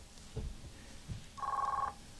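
One short electronic telephone ring, about half a second long, in the second half; two soft low thuds come before it.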